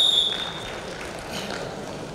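A referee's whistle blast trailing off in the first moment, followed by the low murmur of a sports hall crowd.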